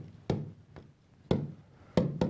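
A stylus tapping against a large touchscreen display while handwriting, giving about four sharp, irregular taps across two seconds over quiet room tone.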